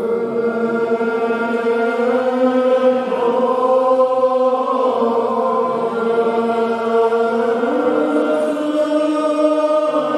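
Congregation singing a Gaelic metrical psalm unaccompanied, many voices holding long, slow notes that drift from one pitch to the next.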